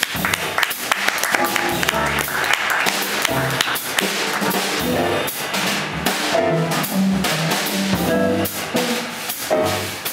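A jazz band playing, with double bass and drum kit under other instruments.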